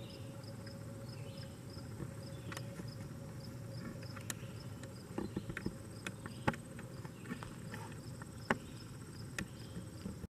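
Faint outdoor summer insect chorus: a high chirp repeating evenly about two to three times a second over a continuous high trill, with scattered faint clicks.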